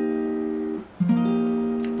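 Acoustic guitar playing an F sus4 chord. Its notes are plucked one after another and ring together, are damped a little under a second in, then the chord is plucked again and rings on.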